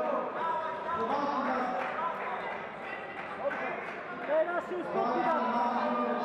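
Several people's voices talking and calling out at once, overlapping, in a large indoor hall.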